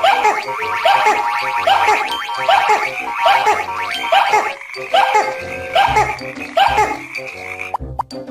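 Cartoon frogs croaking, a short call that rises and falls, repeating evenly about every two-thirds of a second over background music.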